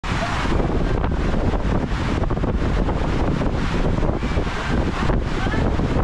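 Water rushing and churning steadily in a raft waterslide's run-out pool, a continuous splashing noise that stays loud throughout.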